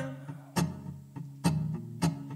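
Acoustic guitars playing a quiet accompaniment to a slow country ballad in a gap between sung lines, with two sharper strums about half a second and a second and a half in.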